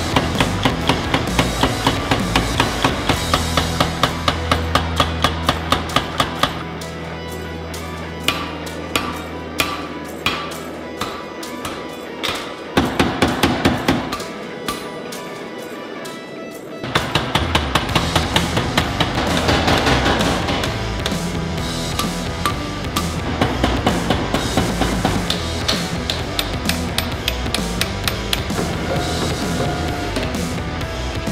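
Hammer blows forging red-hot knife steel: a fast, even run of strikes for the first several seconds, then slower scattered blows, a short lull about halfway, and more strikes to the end. Background music plays throughout.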